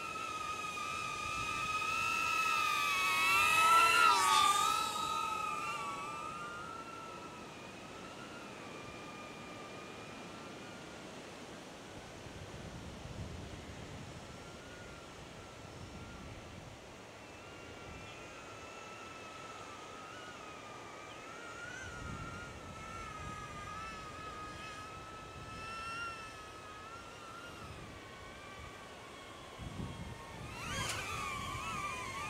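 DJI Neo mini drone's propellers whining in flight, the pitch wavering up and down with the throttle. The whine swells to its loudest about four seconds in as the drone passes close, then carries on fainter.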